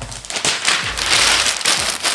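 A sheet of packing paper being pulled from a stack and crumpled by hand: a loud, dense crackling rustle that starts a moment in.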